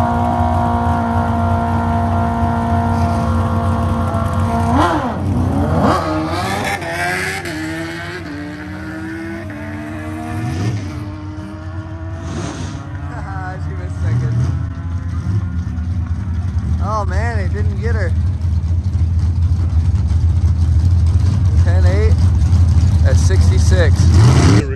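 A supercharged manual car and a motorcycle at a drag strip start line, engines held at steady revs, then launching about five seconds in, engine pitch climbing in steps through several gear changes before fading away down the track.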